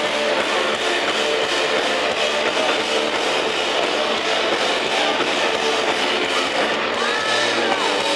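Live rock band playing loudly, with electric guitar to the fore over the drums.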